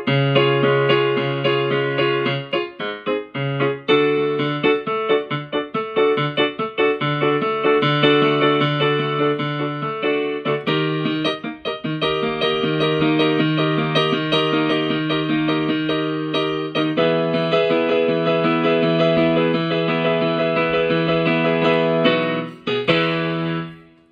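Piano-sound keyboard playing the accompaniment to a vocal warm-up exercise with no voice over it: block chords changing every second or two, stopping shortly before the end.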